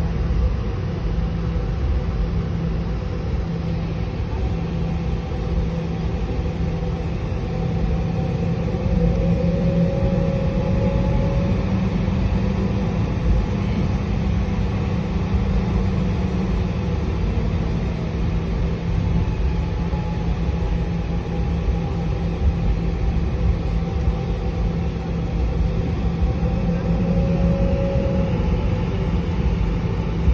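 Steady cabin rumble of a jet airliner taxiing on the ground, with a faint whine that wavers slightly in pitch.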